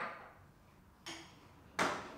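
Glass conical flask knocking and clinking as it is handled, three short sharp knocks with a brief ring, the loudest near the end as the flask is set down on a white tile under the burette.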